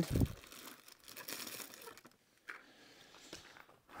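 Faint crinkling and rustling of packaging as a new piston ring is taken out of its box, in short spells with quiet between, after a soft low thump at the very start.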